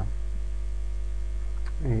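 Steady low electrical mains hum on the recording, unchanging through the pause, with the narrator's voice coming back near the end.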